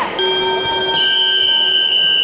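Wrestling timer buzzer sounding, joined about a second in by a louder, higher, long steady blast, likely the referee's whistle. Together they signal a stop in the bout.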